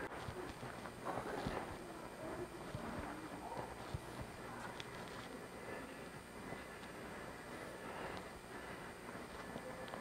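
Faint, irregular footsteps of a person walking on a concrete hangar floor, over quiet room tone.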